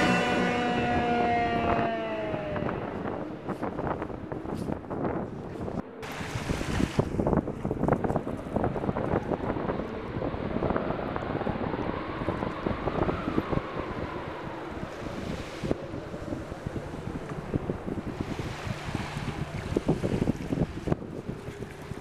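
Wind buffeting the microphone with small waves lapping at the shore, an uneven rushing noise full of short gusts. Music fades out in the first couple of seconds.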